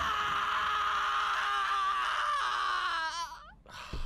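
A child character's long, high-pitched anguished scream from an anime soundtrack, held steady for about three seconds, then wavering and breaking off. A short thump comes near the end.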